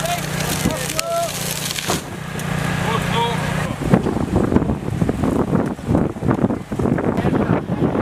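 Voices of a rescue crew over a steady engine hum. The hum stops about four seconds in and gives way to a dense, uneven rumbling and knocking noise.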